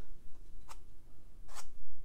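A long round watercolour brush swept across watercolour paper in two short, light strokes about a second apart, drawing thin stem lines.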